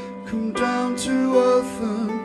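Live music: a man singing with held, wavering notes to his own ukulele, with piano accompaniment.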